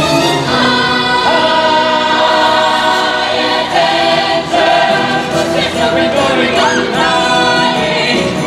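A chorus of voices singing together over orchestral accompaniment, a musical-theatre ensemble number with long held notes.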